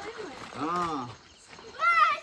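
A drawn-out vocal cry that rises and falls in pitch about half a second in, followed near the end by a louder, higher-pitched call.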